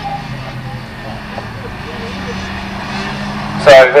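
Autograss race cars' engines running as they lap a dirt oval, heard across the field as a steady drone that shifts a little in pitch. A man's voice starts near the end.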